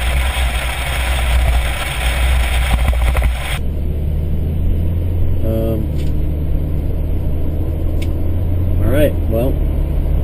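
A loud rushing noise for the first three and a half seconds that cuts off abruptly, then a vehicle engine idling with a steady low hum, heard from inside the vehicle.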